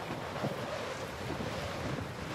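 Steady outdoor wind noise, an even hiss with no distinct events.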